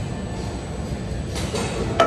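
Steady low rumble of gym background noise, with a short scrape and then a sharp metal clank near the end as a 45 lb iron weight plate is worked on the sleeve of a plate-loaded machine.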